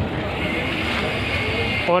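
A vehicle engine running steadily in the background, with a faint high whine coming in about a second in.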